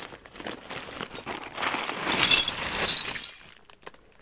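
A heap of small rusty scrap-metal parts clattering and clinking as they are tipped out onto a jute sack, loudest about two seconds in and dying away a little after three seconds.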